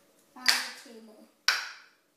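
Two small plastic cups set down one after the other on a wooden tabletop: two sharp knocks about a second apart.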